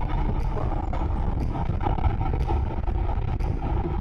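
Motorcycle running at a steady cruise on the open road, a continuous engine drone mixed with wind and road noise heard from the rider's seat.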